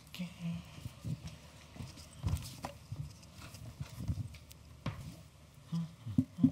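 Scattered knocks and thumps of objects being set down and handled on a small wooden table, an irregular few strokes with the loudest a little over two seconds in.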